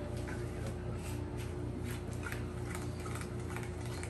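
Tarot cards being picked from the table and handled: a scatter of short, light clicks and flicks over a steady low hum.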